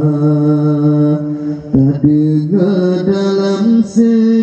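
A man singing an Acehnese qasidah solo into a microphone, holding long steady notes that shift in pitch a few times about halfway through.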